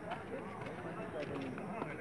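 Indistinct voices of people talking in the background.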